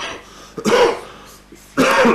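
A person clearing their throat twice, the second time louder, a little under a second in.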